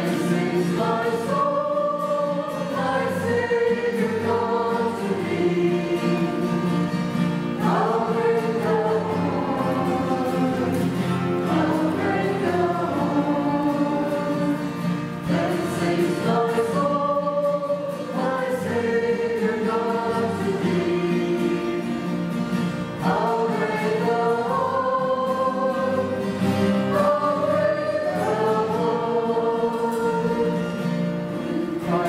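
A hymn sung over a steady instrumental accompaniment, the melody moving in long held notes that rise and fall.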